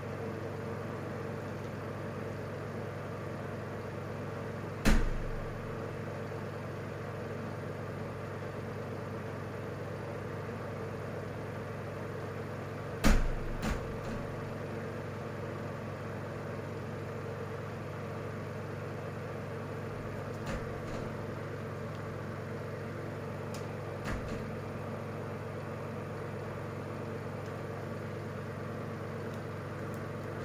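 A few sharp knocks of a pen and hand against a wooden tabletop while drawing: a loud one about five seconds in, two close together around thirteen seconds, and fainter ones later. They sit over a steady low background hum.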